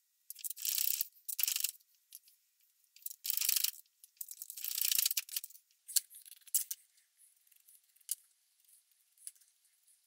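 Four strokes of a hand plane on a shooting board, each a short swishing hiss as it shaves cherry, in the first five seconds. After that come scattered light clicks and taps of small wooden blocks and a wax tin handled on a table.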